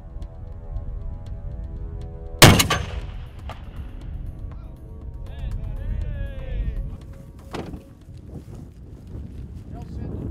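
.50 caliber rifle firing one very loud shot about two and a half seconds in, with a long echo rolling away after it; a second, quieter sharp report follows about five seconds later.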